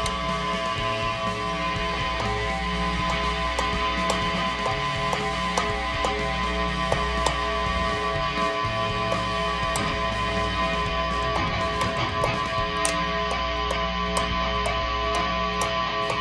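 Squier Bullet Mustang HH humbuckers through a deliberately dirty amp channel with no noise gate: a steady distorted hum and feedback, with scattered clicks as a metal tool presses and taps the pickup pole pieces. The feedback answering each touch shows the pickups are working.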